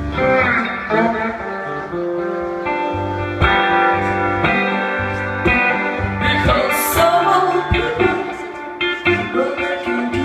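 Live blues played on a box-bodied electric guitar over low bass notes, and a woman's singing comes in about six seconds in.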